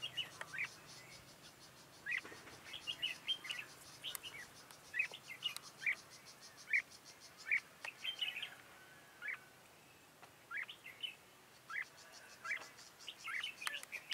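Red-whiskered bulbuls calling: short, high chirps scattered through, a few each second at times. Behind them runs a fast, even, high pulsing that drops out for a few seconds past the middle.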